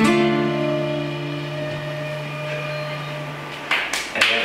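Acoustic guitar's closing chord strummed once and left to ring out, with a shinobue bamboo flute holding a last note over it, ending the song. Applause breaks out near the end.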